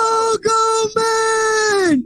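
A person screaming in excitement, three long high-pitched held cries at nearly the same pitch. The last lasts about a second and falls away at the end.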